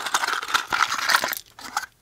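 A small cardboard accessory box being opened and its contents handled: packaging rustling and crinkling with small clicks for about a second and a half, then one more click near the end.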